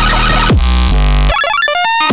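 Riddim dubstep: heavy distorted synth bass, giving way about half a second in to a held low bass chord. In the second half the bass cuts out for a quick run of bright synth notes stepping down in pitch, a fill leading back into the drop.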